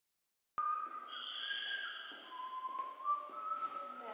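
High whistled tones: a few held notes that step from one pitch to another, starting with a click about half a second in after silence.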